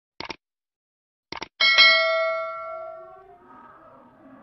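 Subscribe-button animation sound effect: two short clicks about a second apart, then a bell ding that rings out and fades over about a second and a half.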